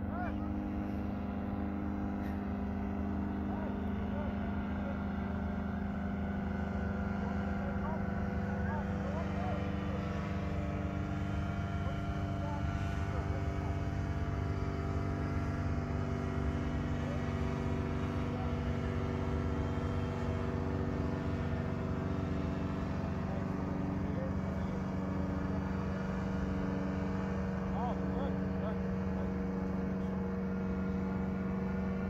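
Fresh Breeze Monster 122 paramotor engine and propeller running steadily in flight overhead: an even drone with several held tones.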